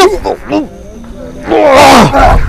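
Short pitched cries, then a loud, rough roar near the end that falls in pitch: a tiger-like growling roar during a staged fight.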